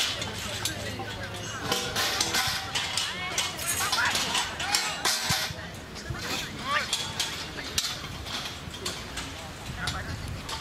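Voices calling and shouting across an open football pitch during play, with many short sharp knocks and clicks scattered through.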